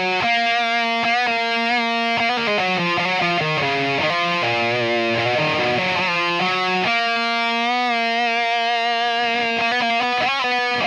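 Distorted eight-string electric guitar played through a Line 6 Helix modelling a Soldano SLO100's overdrive channel, boosted by a TS808 overdrive model, into a Mission guitar cabinet. Metal chords and riffs, with a chord held and left ringing from about seven seconds in.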